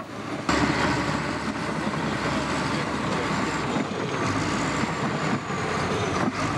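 Shantui SD16L crawler bulldozer running and moving on its tracks as it drives over heaped packages of cheese, a steady mechanical din that gets louder about half a second in.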